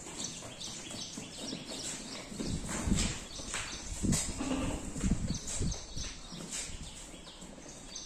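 Hooves of a pen of young goats clicking and shuffling on a concrete floor as the animals move about, with a few duller thumps in the middle.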